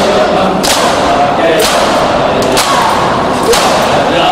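A crowd of men performing matam, striking their chests in unison about once a second, each stroke a sharp slap in a reverberant hall. A group chants a noha throughout.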